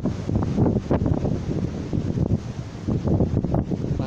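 Wind buffeting the microphone in uneven gusts, over the wash of sea water on a rocky shore.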